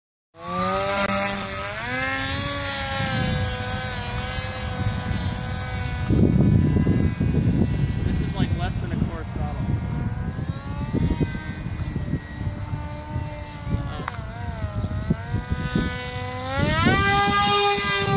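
Electric motor and propeller of a 50-inch RC delta wing, a pitched whine that rises and falls as the throttle is worked in flight. Near the end the pitch climbs sharply as the throttle is opened up. Wind rumbles on the microphone through much of it.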